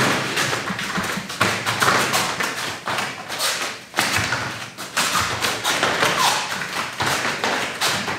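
Bare feet stepping, shuffling and pivoting on gym mats: irregular taps and thuds, roughly one or two a second, as the body shifts side to side and turns.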